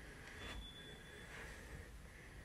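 Quiet room tone with two faint soft rustles, about half a second and a second and a half in.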